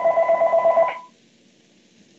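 Telephone ringing, an electronic ring of steady tones pulsing rapidly, which cuts off about a second in.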